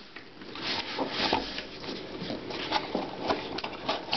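A cardboard box being opened by hand, its lid and flaps scraping and tapping in a string of short rustles and knocks.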